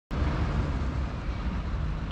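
Steady outdoor background rumble, mostly deep and low, with no distinct events.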